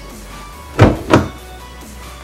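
Two clunks about a third of a second apart as a BMW 328i's rear door handle is pulled and its latch releases.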